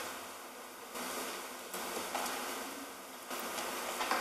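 Steady hiss of a meeting room's sound system, with faint rustling and shuffling as a person walks up to the podium. The hiss steps up and down in level a few times.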